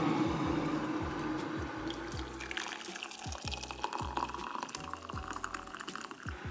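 Hot water poured from an electric kettle into a ceramic mug, the splashing of the stream building up from a couple of seconds in. Background music with a bass line runs underneath.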